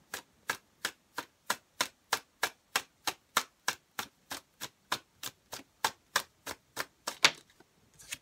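A deck of tarot cards being overhand-shuffled by hand, small packets of cards slapping onto the deck in a steady rhythm of about three sharp clicks a second. The loudest click comes near the end.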